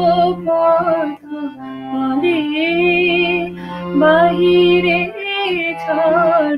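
A woman singing a Bengali song over instrumental accompaniment, holding long notes with vibrato above sustained low held tones.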